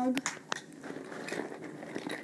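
Small plastic toy figurines being handled: two sharp clicks early on, then faint rustling and ticking as the next figure is picked up.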